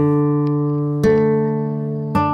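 Guitar music: a chord struck at the start and another about a second in, each left ringing and slowly fading.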